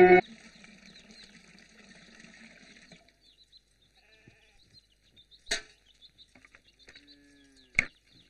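A film score cuts off abruptly at the start, leaving quiet village ambience. There is a sharp knock about halfway through, a single short goat bleat about seven seconds in, and another knock just after it.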